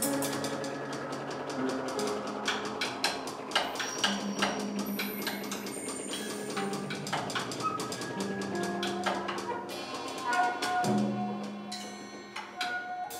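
Live improvised jazz on grand piano and drum kit: scattered piano notes and chords with frequent light stick strikes on drums and cymbals, and a louder low piano chord near the end.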